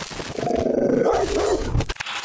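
A dog sound effect: one rough, drawn-out bark-growl lasting about a second and a half.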